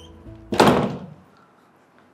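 A wooden door being pushed shut, one loud bang about half a second in that dies away quickly, over soft background music that ends as the door closes.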